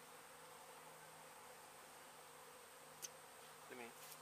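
Faint, steady buzzing of honeybees flying around a hive being removed, with a brief click about three seconds in and a short vocal sound just before the end.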